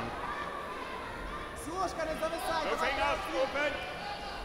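A wrestling coach shouting short calls from the mat-side, heard fainter than the commentary over the steady hum of a large sports hall. The calls come from about a second in until near the end.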